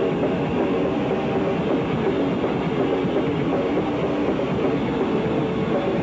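Noise rock band playing live: a dense, unbroken wall of distorted electric guitar and bass over pounding drums, at a steady loudness.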